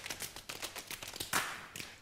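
A quick, irregular run of sharp taps and clicks, with one louder tap a little after halfway.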